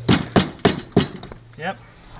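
A hammer striking the rusted steel edge of a VW Beetle chassis floor pan where the side runner joins it: four sharp blows about a third of a second apart. The metal is badly rotted and is being knocked away.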